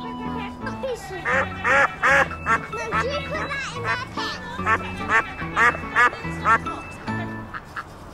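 Ducks quacking close to the microphone in rapid strings of loud quacks, with a short pause about halfway through; this is the Hollywood Edge 'Bird Duck Quacks Close' library effect. Soft background music with steady held notes plays underneath.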